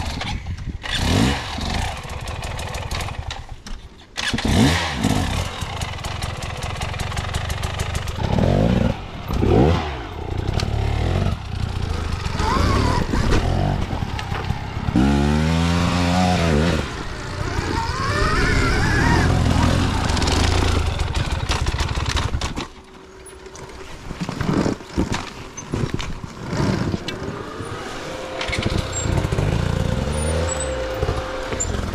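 Enduro dirt bike engine revving in repeated throttle blips, pitch rising and falling again and again, as the bike is ridden over a log and along a rough forest trail. The sound breaks off abruptly a few times.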